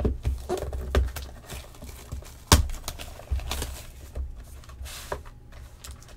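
Cardboard trading-card boxes handled on a padded table mat: a series of light knocks and thumps as a box is taken from a stack, set down and opened, the sharpest knock about two and a half seconds in.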